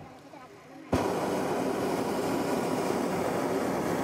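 Hot air balloon's propane burner firing: a loud, steady rushing blast starts abruptly about a second in and holds at an even level.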